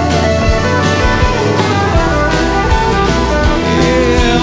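Live band playing an instrumental passage between sung lines: drums keep a steady beat of about two strikes a second under bass, and a lead guitar plays notes that glide up and down.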